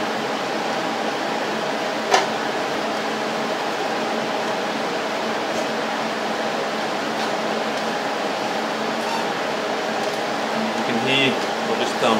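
Cooling fan of a Rossi TC205 inverter TIG welder, switched on and idling, running with a steady hum and faint whine. A single sharp click comes about two seconds in.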